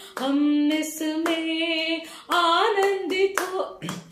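A woman singing a devotional song unaccompanied, in held, gliding phrases, clapping her hands along with it.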